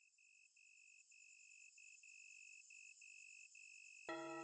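Faint crickets chirping: a high trill broken into uneven short pulses, growing louder as it fades in.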